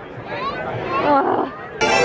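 A person's voice, its pitch bending up and down, then show music cuts in suddenly near the end.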